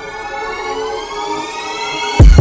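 Electronic riser: a synthesized sweep of many stacked tones gliding steadily upward in pitch, building up to a drop.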